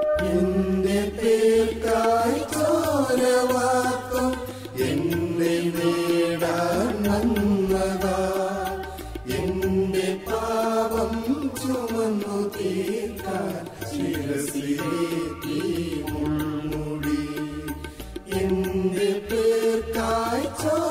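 Church choir singing a Malayalam Christian hymn of praise, with electronic keyboard accompaniment.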